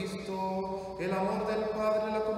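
A man's voice chanting in long, steady held notes, a new note starting about a second in.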